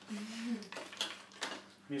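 A wooden spatula stirring in a stainless steel pot, knocking against the metal a few times about a second in. A short vocal sound from someone comes just before.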